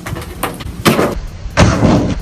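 Stiff plastic packaging crackling and snapping in three short bursts, the last the loudest, as a collectible coin is pried out of its plastic tray.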